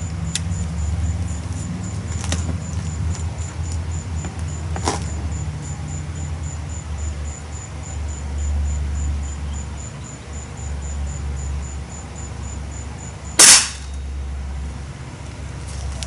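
Swiss Arms .177 break-barrel spring-piston air rifle firing once, a single sharp crack about thirteen seconds in, after a few light clicks near the start.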